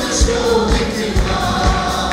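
A mixed group of men and women singing a Malayalam worship song together, with band accompaniment and a steady low beat about twice a second.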